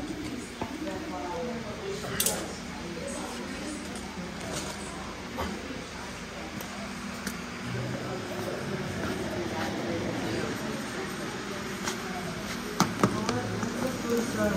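Indistinct talking in a workshop, with a few sharp metallic clinks, the loudest pair near the end.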